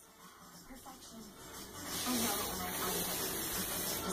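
A child blowing into the valve of a blue plastic inflatable: a breathy rush of air that grows louder about halfway through.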